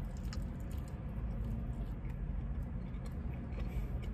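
Faint chewing of a small bite of homemade kit-made sushi, with a few soft mouth clicks, over a steady low hum in a car cabin.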